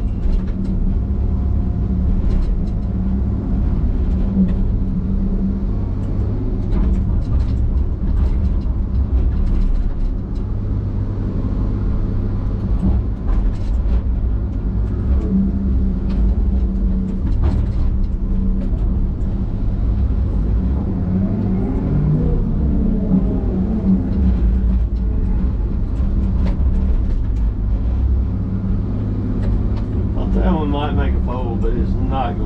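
Diesel engine and hydraulics of a John Deere log loader running steadily, heard from inside the cab while it works the grapple. Scattered knocks come through the drone, and a little past halfway the pitch rises and falls briefly.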